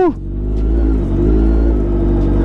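Sport motorcycle engine running steadily at low revs as the bike rolls slowly along, with a short rise and fall in pitch right at the start.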